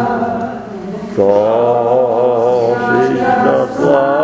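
A congregation singing a slow hymn in Bulgarian, long held notes with a slight waver. The singing thins for a moment about a second in, then the next line starts.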